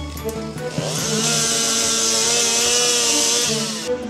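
A chainsaw revs up about a second in, runs at high speed, then drops away near the end, over background music.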